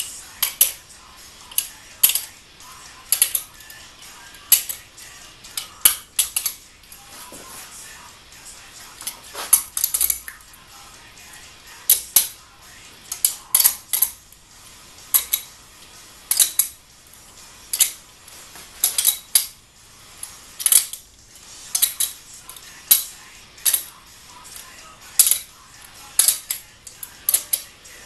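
Hand ratchet on a socket extension clicking in short runs of sharp metallic clicks, roughly one run a second, as cylinder head bolts are snugged down but not torqued.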